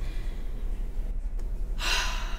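A woman's sharp intake of breath near the end, over a steady low electrical hum.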